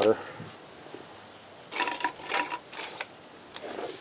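A short burst of rustling and crinkling from hands handling potting things, about two seconds in, between quiet stretches, with a faint rustle again near the end.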